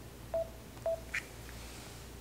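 Two short electronic beeps about half a second apart, then a brief higher tick, against a low room hum.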